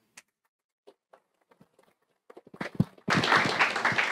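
Small audience applauding: a few scattered claps start about two and a half seconds in and build into steady applause with some laughter in the last second.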